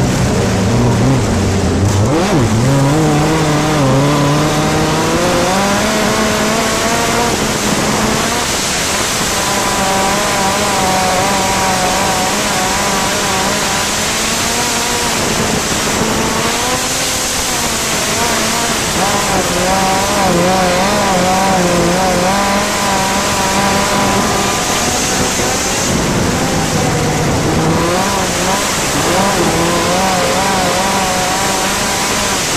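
Gaerte 166 ci inline racing engine of a dirt-track midget race car at full racing speed, heard from the cockpit. The engine note climbs over the first several seconds and then holds high, dipping briefly a few times as the driver eases off for the turns, over a steady rush of wind and tyre noise.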